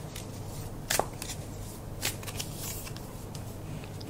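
A tarot deck being shuffled by hand: soft sliding and rustling of cards, with a sharper card snap about a second in and a fainter one near two seconds.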